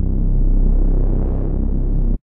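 Reese bass synth patch in Serum holding one low note: a seven-voice detuned unison saw wave layered with a sine, with a slow phasing shimmer. It runs through a driven low-pass filter set around 300 Hz, so only a dark, deep tone comes through.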